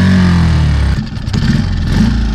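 Mercury 6 hp outboard motor running, a steady low engine note that briefly breaks up and dips about a second in, then runs on.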